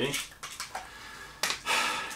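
Plastic prescription pill bottle being handled, with a single sharp click about one and a half seconds in as the child-resistant cap is worked.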